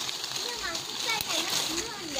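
Lychee leaves and twigs rustling and swishing as a hand pushes through the branches to pick fruit, with faint voices in the background.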